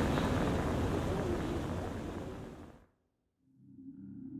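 Radio static hiss, played back from a low-quality flip-phone recording, fading out about three seconds in to a moment of silence. A low steady hum then comes in.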